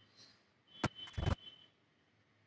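Computer desk clicks: one sharp click a little before halfway, then a short cluster of heavier clacks a moment later.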